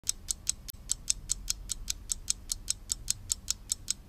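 Clock ticking sound effect: sharp, even ticks at a fast pace of about five a second, over a faint low hum.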